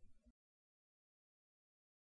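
Near silence: a digital pause with no sound at all.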